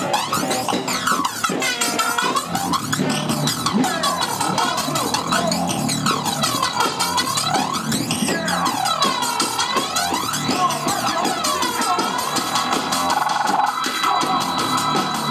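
Human beatboxing into a cupped handheld microphone through a PA, imitating electronic dance music: repeated sweeping, arching tones over a steady low beat, with no words.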